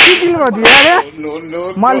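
Two sharp slaps from a hand striking a man on the head, about 0.7 s apart, with the man crying out in pain through and after them.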